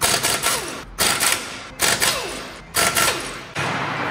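Impact wrench hammering lug bolts loose from a car's front wheel, in four short rattling bursts, each with a falling pitch.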